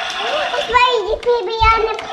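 A high, child-like voice speaking.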